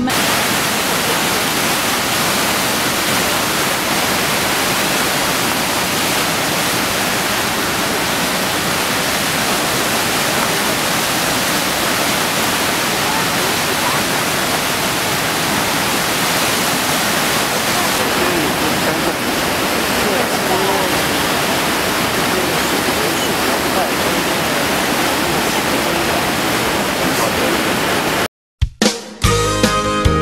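Glacial river water rushing in whitewater through a narrow rock gap under a natural stone arch: a steady, even rush of water noise.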